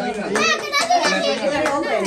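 Excited children's voices and chatter, several voices overlapping at once.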